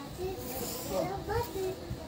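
Quiet speech with a soft hissing rustle of light cloth being handled and draped, most noticeable about half a second to a second in.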